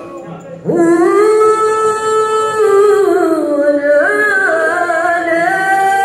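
A single voice chanting a mawlid devotional phrase in long held notes that slide slowly, dipping in pitch about three seconds in and stepping back up about a second later, with no drumming.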